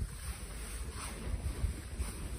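Wind buffeting the microphone: a low, uneven rumble over a faint steady hiss.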